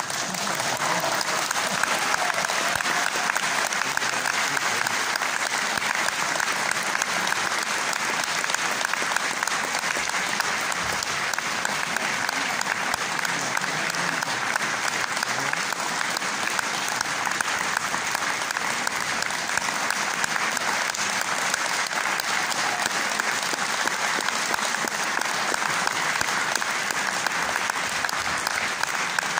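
Audience applause: dense, steady clapping.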